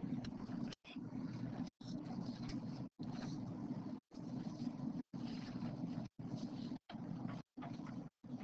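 Faint, steady low room noise, broken by short silent dropouts roughly once a second.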